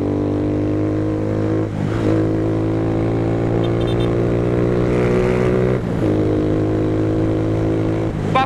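150 cc single-cylinder motorcycle engine running on the move, a steady note with two short dips, about two seconds in and near six seconds.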